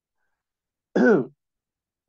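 A man clears his throat once, briefly, about a second in; the sound falls in pitch.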